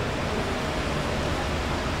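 Steady background hiss of room tone picked up through the microphone.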